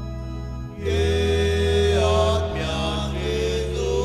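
A church hymn is being sung over sustained organ-like accompaniment chords. The chord changes about a second in and again about two and a half seconds in.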